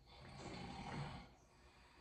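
A person's soft breath close to the microphone: one faint breath that swells over the first second and fades.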